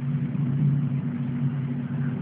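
Jet aircraft passing overhead: a steady rumble with a low drone, sounding kind of weird.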